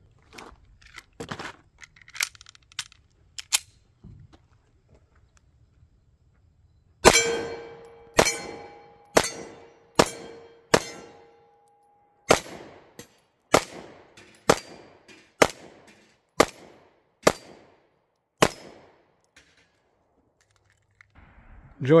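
Ruger Max-9 9mm pistol firing about thirteen shots at an even pace, roughly one a second, after a few faint clicks. A steel gong rings after each of the first five shots, and the later shots go at bowling-pin and steel knock-down targets.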